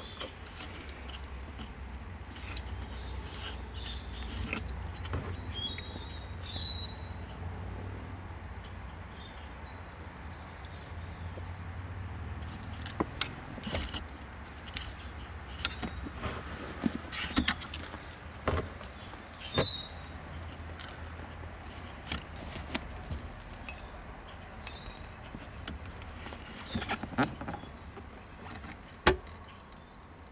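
Small clicks and rustles of hands working a thin wire into plastic crimp-shrink butt connectors, with sharper snaps near the end as a hand crimper squeezes a connector shut, over a low steady hum.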